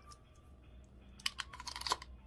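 A quick run of small clicks and rattles starting about a second in: a collapsible metal straw being handled and fitted back into its plastic case.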